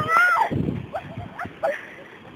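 A high-pitched cry that glides up and then down in the first half-second, followed by a couple of short squeaks and a few soft thumps.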